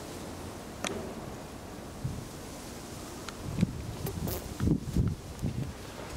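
Footsteps on paving over a steady outdoor hiss of wind, with a sharp click about a second in and a cluster of low thumps in the second half.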